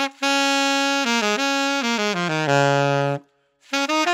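Saxophone played with a synthetic Ambipoly reed: a held note, then a short phrase stepping downward to a low held note that stops about three seconds in.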